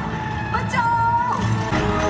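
Film soundtrack played over cinema speakers: music and action sound effects over a steady low rumble, with a high held tone about a second in and steady musical chords coming in near the end.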